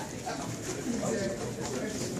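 Indistinct voices talking in the background, quieter than nearby speech.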